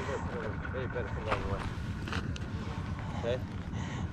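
Quiet talk over a low, steady rumble.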